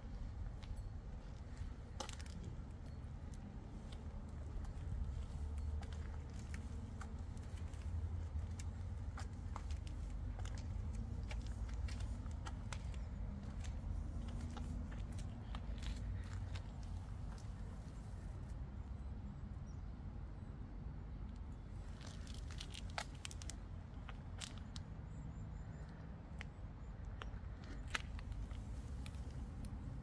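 Scattered footsteps and small clicks and rattles over a steady low rumble.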